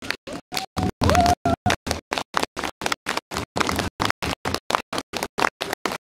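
A woman singing a song to backing music through a stage sound system, holding one note for about a second early on. The audio breaks up in rapid dropouts, six or seven a second, which gives it a stuttering, scratchy sound.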